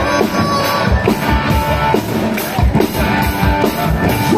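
A live band playing loud rock-style music, with a drum kit keeping a steady beat under guitar.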